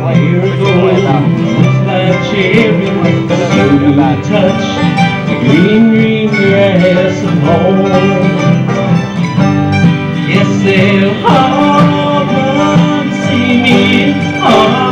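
Live acoustic bluegrass band playing an instrumental passage: acoustic guitar and upright bass under a lead line with a few sliding notes.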